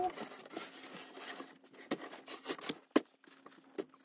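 Raindrops tapping irregularly on the cabin roof: scattered light taps, with one louder knock about three seconds in. A faint steady hum sits underneath.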